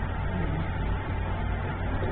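Steady low background hum, with a faint steady whine above it.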